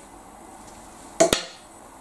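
Quiet room with one sharp double click about a second in, from a cigarette lighter being handled while a cigarette is lit.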